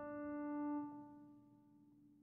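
Background piano music: a held piano note dies away and fades out about a second in, leaving silence.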